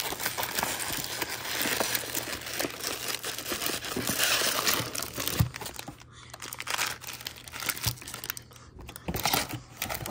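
Crinkling of foil-wrapped 2024 Topps Series One baseball card packs being handled and lifted out of their cardboard hobby box, coming and going, with quieter moments about six seconds in and again near nine.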